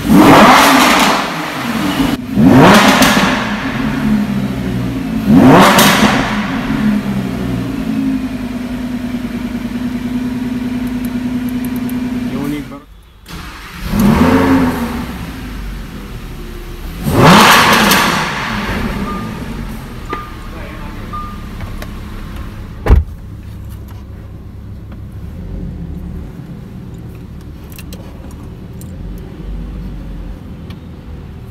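Lamborghini Huracán's 5.2-litre V10 engine revved in short blips: three revs in the first six seconds, a steady idle, then two more revs after a brief break around 13 seconds, settling back to idle. A single sharp click sounds near the 23-second mark.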